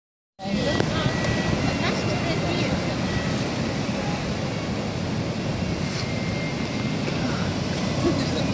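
Steady rumble of ocean surf breaking on a beach, with a brief bit of speech right at the start.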